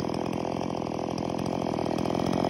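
Stihl MS170 two-stroke chainsaw idling steadily while it rests on the ground, not cutting. It runs on an aftermarket HIPA carburetor, which the owner says seems to be working pretty good.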